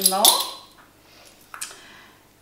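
A voice trails off at the start, then a metal measuring spoon clinks once against a small dish about one and a half seconds in as sea salt is scooped.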